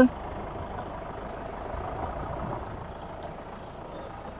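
Modified open jeep's diesel engine running steadily at low revs, heard faintly, with a slight rise about halfway through.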